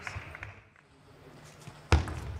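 A table tennis ball struck once, a sharp click near the end that is the first stroke of a serve. Before it, light tapping fades out within the first half second, followed by a near-quiet second.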